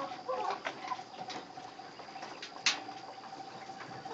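Young silkie chickens giving soft clucks and peeps, mostly in the first second, with scattered light clicks and one sharper click about two and a half seconds in, over a steady faint tone.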